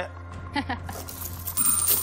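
Counters clinking in a coin-pusher game machine as one tips over the edge, with a bright chime ringing near the end, over a steady music bed; a short laugh about half a second in.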